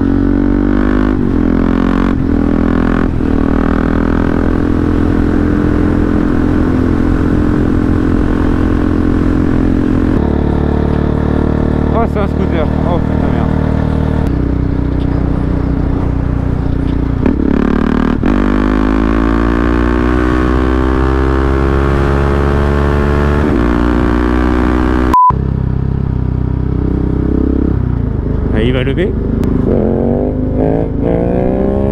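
KTM 690 Duke single-cylinder engine through an Akrapovic exhaust, ridden hard, its pitch climbing again and again as it accelerates through the gears. Near the end there is a brief high beep as the sound cuts out for an instant.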